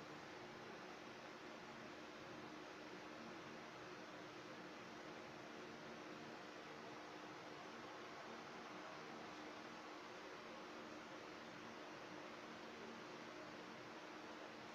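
Near silence: steady hiss of room tone with a faint, even hum.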